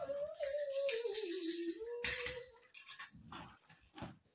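Rattling and rustling of small items being handled and shaken, over one long tone that dips in pitch and rises again.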